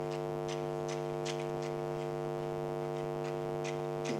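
Steady electrical mains hum, a buzzy drone with many overtones, picked up by the recording, with a few faint ticks.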